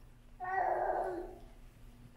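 A single short wordless vocal sound lasting about a second, starting about half a second in.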